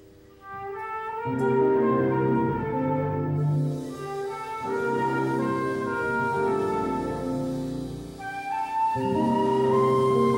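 Small jazz band playing live, a flute carrying a sustained melody over piano, upright bass and guitar accompaniment. The music comes in out of a near-silent moment about half a second in, and the band fills out a second later.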